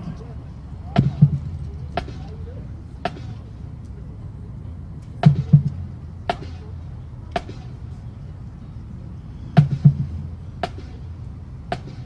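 Scattered sharp knocks and clicks, about a dozen, irregularly spaced and some in quick pairs, over a steady low background rumble.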